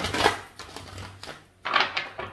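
Oracle card deck being shuffled by hand, a papery rustling clatter at the start and another burst near the end.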